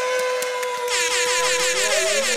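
An air horn sounding one long, steady note. About a second in, a denser, wavering sound joins it.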